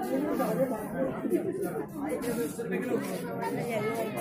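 Crowd chatter: many people talking at once close around the microphone in a packed crowd.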